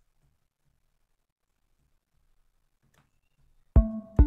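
Near silence for most of the stretch, then near the end a programmed drum-machine beat starts playing from LMMS: a kick drum hit with a pitched melody note sounding over it.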